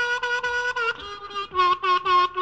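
Blues harmonica played solo: a high chord held in quick pulsing repeats, then a drop to a lower chord about a second in.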